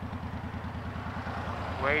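Honda VTX 1300 V-twin engine idling steadily, a low, even pulsing, with the bike stopped at a traffic light.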